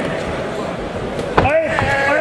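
A single sharp smack of a blow landing in a Thai boxing bout, about one and a half seconds in, over steady crowd noise in the hall. Right after it, a wavering rising-and-falling pitched sound begins.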